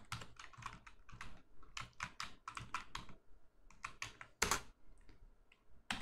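Typing on a computer keyboard: a quick, irregular run of key clicks, thinning out near the end.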